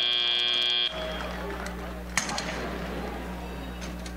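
Arena end-of-match buzzer sounding steadily and cutting off just under a second in, marking time expired. After that, a quieter steady low hum with one click about two seconds in.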